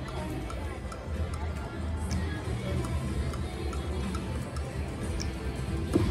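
Ultimate Fire Link China Street slot machine spinning its reels, with the game's music and faint ticks from the reels over a steady low casino din.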